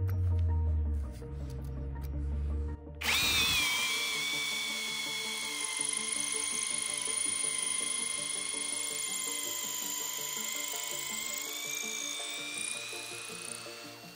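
Parkside Performance PSBSAP 20-Li C3 cordless drill running in second speed, boring an 8 mm wood bit into a log. Its high, steady motor whine sets in about three seconds in and fades near the end, with no sign of bogging down. Background music plays along.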